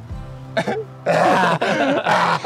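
Background music, then about a second in a man starts laughing loudly over it.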